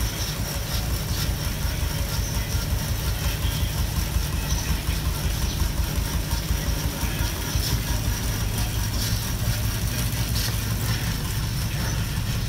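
Fixed-gear bicycle spinning on indoor rollers: the tyre and roller drums running with a steady low rumble, pulsing quickly and evenly as the rider pedals.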